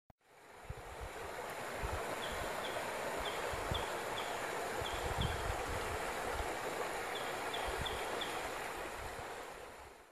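Shallow creek running over rocks: a steady rushing of water that fades in at the start and fades out near the end. A faint, high chirp repeats in short runs over it.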